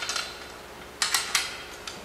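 Metal clicks of a steel bolt and washer knocking against the tubular steel bracers and center hub as the bolt is worked through them. There are three quick clicks about a second in.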